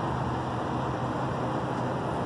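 Steady motor-vehicle noise: a low, even engine hum under a hiss, unchanging throughout.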